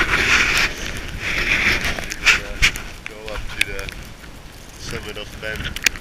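Gusty mountain wind buffeting the microphone, loudest in the first two seconds, with scattered sharp clicks and a few brief voices.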